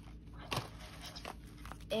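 Paper grab bag and bubble-wrap packaging being handled: a sharp crinkle about half a second in, then soft rustling with a few small clicks.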